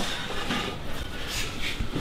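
A bare aluminium Subaru flat-six crankcase half being shifted and turned on a workbench: light rubbing and scraping with a few faint knocks.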